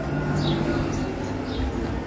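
Steady low hum of a split air conditioner's outdoor unit, its compressor and fan running, with a few faint bird chirps.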